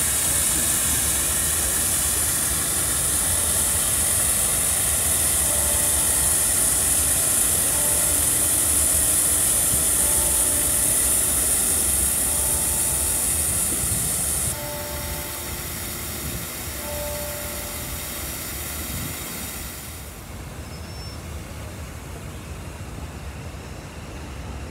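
A steady high hiss over a low rumble of city noise. The hiss drops off abruptly about halfway through and again near the end. Faint short beeps at two alternating pitches repeat through the middle.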